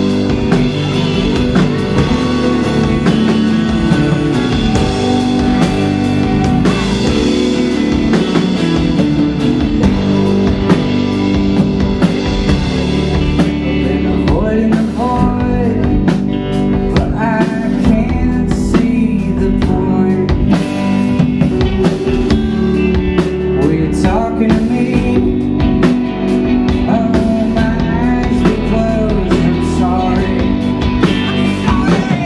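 Indie rock band playing live: electric guitars, drum kit and keyboard, with singing.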